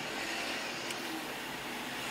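Steady car interior noise, engine and tyres heard from inside the cabin as the car moves forward at low speed, with a faint click about a second in.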